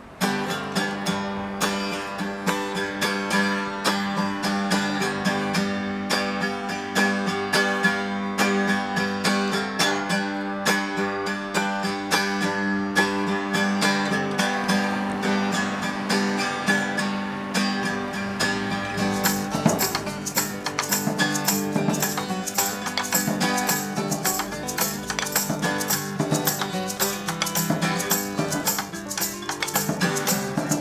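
Acoustic guitar playing a steady, busy pattern as a song's intro. About two-thirds of the way in, drums played with sticks join with quick, evenly spaced hits.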